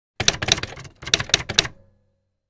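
Typewriter keys struck in two quick runs of clicks with a short pause between them.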